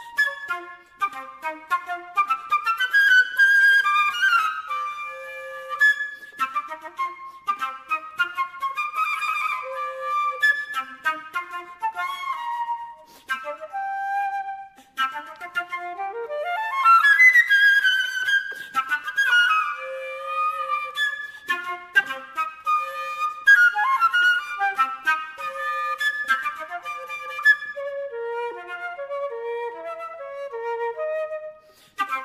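Unaccompanied solo concert flute playing a fast, running passage of quick notes, with a rapid upward run a little past halfway.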